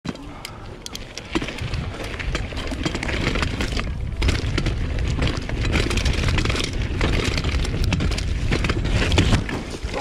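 Mountain bike riding fast over a dirt trail: a steady low wind rumble on the camera microphone, with tyre noise and frequent sharp rattles and clicks as the bike jolts over bumps. Near the end the bike crashes.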